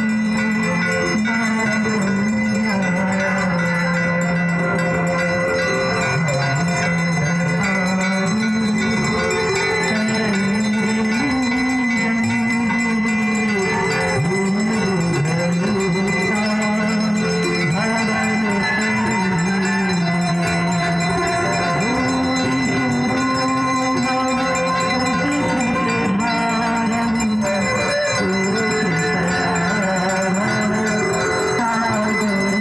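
Devotional Ganga aarti music: a slow, low sung melody that steps up and down in pitch, with bells ringing continuously over it.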